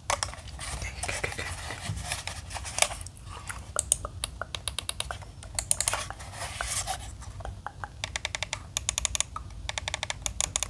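Fingertips tapping, scratching and clicking on a plastic computer mouse: quick runs of dry clicks and taps, with scratchy rubbing between them.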